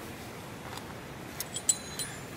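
Three or four short metallic clinks in the second half, as carabiners and belay hardware knock together while being handled, each with a brief high ring.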